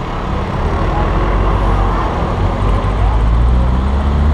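Car driving slowly along a town street: a low engine drone with road noise that grows louder about half a second in.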